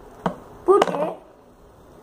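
A short sharp click from small plastic pen parts and erasers being handled, then a single spoken word.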